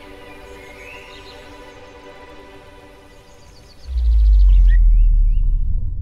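Soft sustained music chords with birds chirping. About four seconds in, a loud deep rumble comes in and holds, drowning the music.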